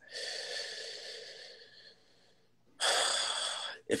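A man breathing out loudly while thinking: a long breathy sigh that fades away over about two seconds, then after a short pause a shorter, louder breath just before he starts to speak.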